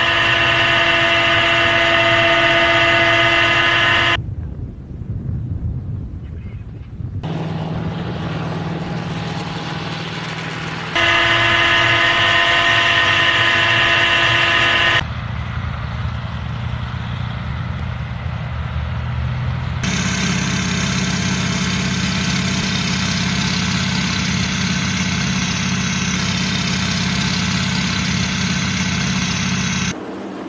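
Military vehicle and aircraft engine noise in abruptly cut segments. A steady whine made of many fixed pitches fills the first four seconds and returns about eleven to fifteen seconds in. Between and after those stretches the engine noise is steadier and rougher, and from about twenty seconds on a broad, even engine noise takes over.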